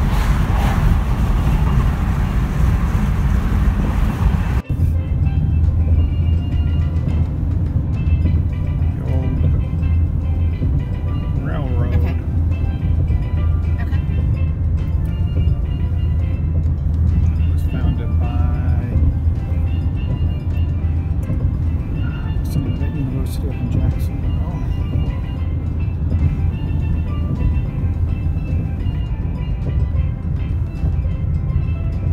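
Wind and road rush from a moving car, cut off abruptly about four and a half seconds in by background music with a steady heavy bass and vocals.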